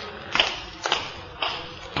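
Footsteps, a radio-drama sound effect: a steady walk of about two steps a second, five strokes in all.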